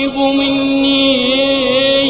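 A male singer holds one long sung note in an Arabic song, with the accompaniment under it; the note wavers in pitch in its second half.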